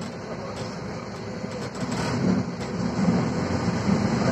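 Cabin noise of a Volvo 7000A articulated city bus under way: a steady low engine and road rumble that grows louder about halfway through, with a few light rattles from the body.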